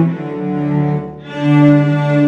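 A cello ensemble playing, several cellos bowing held notes together. The sound eases off briefly just past a second in, then a new chord swells in.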